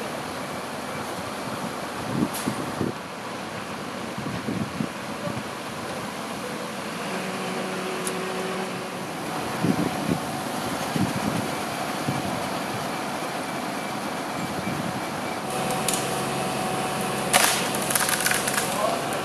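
Steady engine noise, typical of a fire brigade turntable ladder truck running to power its ladder, with a few faint knocks.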